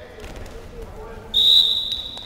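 Wrestling referee's whistle: one loud, shrill blast of about a second, starting near the end, stopping the bout as the wrestlers reach the mat's edge.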